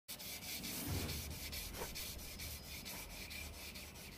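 A car's painted fender being hand-sanded wet, in quick, even back-and-forth strokes, about five a second: the old paint is being scuffed down to prepare it for repainting.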